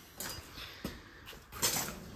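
Faint handling noises of someone moving in a cramped space: light rustles and a soft knock, with a short breathy hiss near the end.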